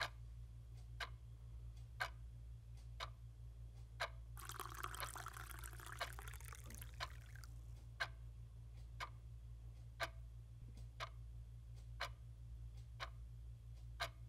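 Faint clock ticking once a second over a low steady hum. About four seconds in, a soft rushing noise rises and fades over some three seconds.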